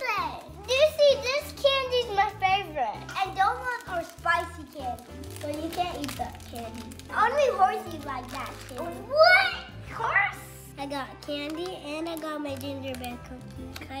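Young children's voices over background music with a steady bass line.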